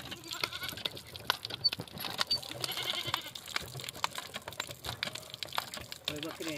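Hand pump being worked, its mechanism knocking and clicking in quick, irregular strokes, with water splashing into the basin and a few short squeaky calls near the start and about three seconds in.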